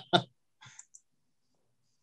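A person's short laugh, two quick bursts right at the start, then a couple of faint clicks and near silence.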